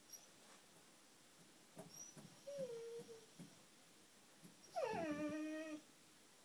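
English springer spaniel whining: a short, thin whine about two and a half seconds in, then a longer, louder whine near the end that drops in pitch and then holds steady for about a second. It is the distress of a dog stuck with her head wedged behind a TV.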